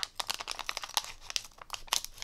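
Scissors cutting open a clear plastic bag held in hand, the plastic crinkling and crackling with a quick, irregular run of crisp snips.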